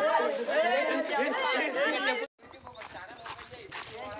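Several young men's voices talking and calling out over one another, cut off abruptly a little past halfway. After that comes a quieter stretch with faint voices and a few light knocks.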